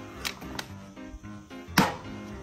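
Background music, with a plastic water bottle landing upright on a table in a single sharp knock near the end, after a couple of lighter clicks.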